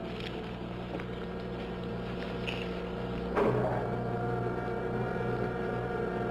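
Steady electronic hum of a spaceship cabin sound effect, made of several steady tones. About three and a half seconds in, a sudden sound sweeps down in pitch and the hum grows louder.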